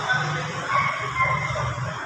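Small motorcycle engine running at low speed with a steady low hum as the bike is ridden slowly through a cone course. Faint voices can be heard in the background.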